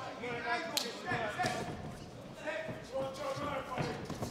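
Men's voices calling out around a boxing ring, with dull thuds of the fighters' feet on the ring canvas and one sharp smack a little under a second in.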